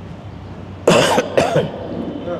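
A man coughing twice in quick succession, close to his microphone, about a second in.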